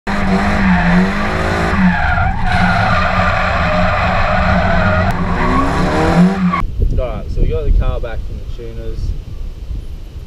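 Turbocharged Nissan Sil80 drift car's engine revving, its pitch rising and falling, with the tyres squealing through a drift, heard from inside the cabin. The sound cuts off suddenly about two-thirds of the way through, and a man's voice follows.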